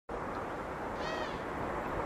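Steady outdoor background noise, with one short, high call about a second in that rises and then falls in pitch.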